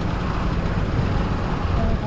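Steady low rumble of a moving road vehicle, with faint voices underneath.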